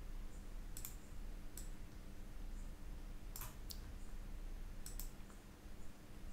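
Computer mouse clicking: about five short, sharp clicks at irregular spacing, some in quick pairs, over a faint steady low hum.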